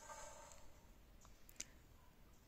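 Near silence with a faint soft sound at the start, then a few faint, short clicks.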